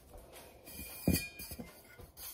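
Light rustling and small clicks of sticker backing paper being handled, with one soft knock about a second in.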